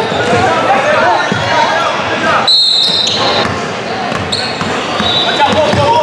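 Basketball game in a gym: a ball bouncing on the hardwood court and spectators talking and calling out, echoing in the large hall. Two short high squeals come about halfway through.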